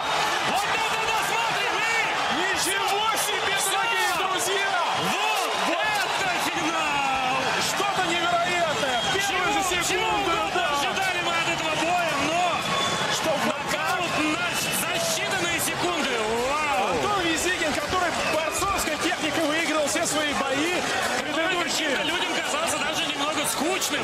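A large arena crowd cheering and shouting after a knockout, with many voices overlapping in a continuous din and scattered sharp clicks.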